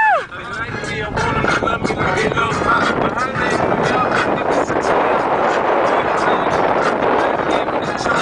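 Toyota 4x4 driving over soft desert sand, heard from on board: a steady, loud mix of engine, tyre and wind noise, with a song with vocals playing over it.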